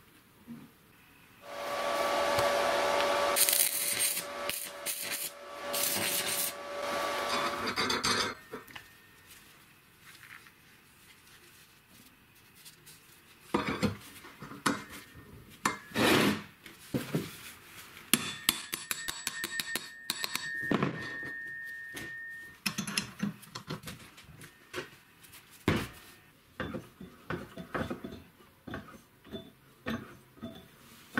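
A power tool runs loudly for about seven seconds, starting a second and a half in. After that, loose steel parts clank and knock on the workbench while they are handled, and a small motor gives a steady high whine for a few seconds in the second half.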